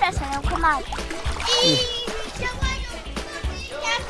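Children talking over background music, with water splashing as a child moves in a shallow inflatable pool.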